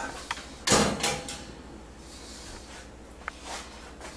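A metal springform cake tin and the oven's wire rack clattering and scraping as the baked cake is lifted out of the oven: a short click, a louder scrape about a second in, and a light click near the end.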